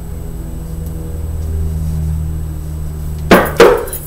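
A steady low hum, then two loud, sharp knocks in quick succession about three and a half seconds in.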